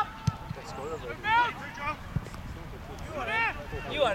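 Footballers shouting to each other across the pitch: two raised calls, about a second in and again past three seconds, with a few dull thumps in between.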